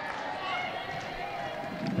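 Open-air ambience of a live football match in a mostly empty stadium: a steady background hiss with faint, distant calls from the pitch.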